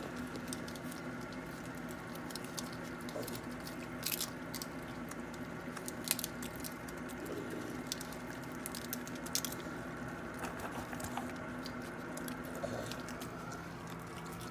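Several raccoons eating peanuts and seed, with irregular crunching, chewing and small clicks, the sharpest about four and six seconds in, over a steady low hum.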